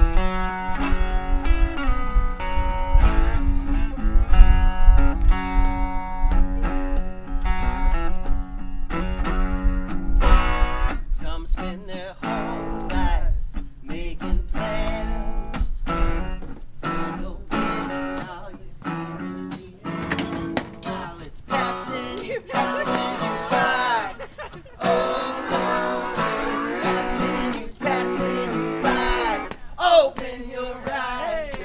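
Mule resonator guitar played solo through a cable to an amplifier: a continuous run of picked notes and chords.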